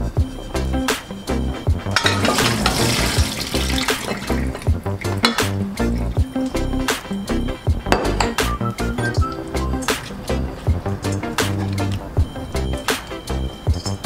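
Background music with a steady beat. About two seconds in, water pours out for roughly two seconds: rinse water being drained off cut cucumbers into a stainless-steel sink.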